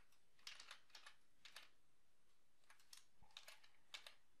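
Faint computer keyboard keystrokes: a handful of short clicks in small clusters, spread every second or so through near-silent room tone.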